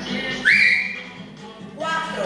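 A single short whistle from the instructor, her hand at her mouth. It slides quickly up in pitch, then holds steady for about half a second, over background workout music.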